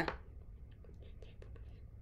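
Quiet room tone: a steady low hum, with a few faint, soft ticks about a second in.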